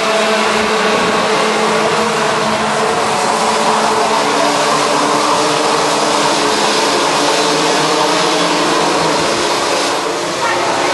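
A pack of 125 cc two-stroke Rotax Junior Max kart engines racing together, their mixed buzz loud and continuous.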